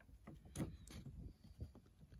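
Faint handling noises: a few soft taps and rustles, the clearest about half a second in.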